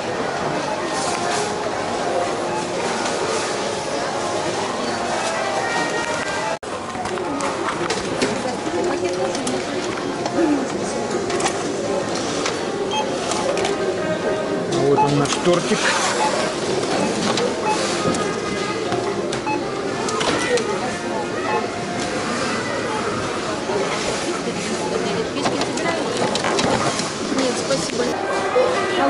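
Busy supermarket checkout: people talking, with music playing in the background. The sound breaks off for an instant about six and a half seconds in.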